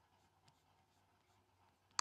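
Near silence with faint room noise, a faint click about half a second in and a sharp computer click right at the end, made while browsing the loop list.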